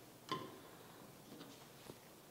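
Hollow plastic toy bowling pins knocking lightly as they are set upright on a wooden table: one sharp clack about a third of a second in, then two fainter ticks.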